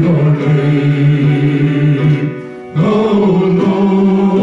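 Three worship singers, a woman and two men, singing a slow praise chorus together into microphones, with long held notes: one note held for about two seconds, a short dip, then another long note.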